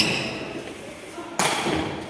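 Two thuds of a sepak takraw ball being kicked, one at the very start and one about one and a half seconds in, each ringing on in the echo of a large sports hall.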